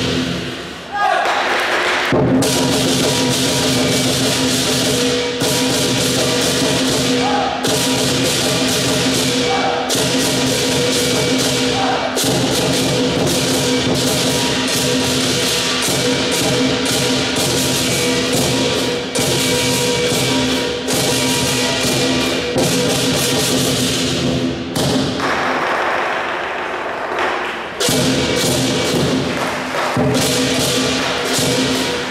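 Lion dance percussion: Chinese lion drum, cymbals and gong played together in a fast, loud, driving rhythm, with the gong's steady ring sounding under the strikes. The playing dips briefly about a second in.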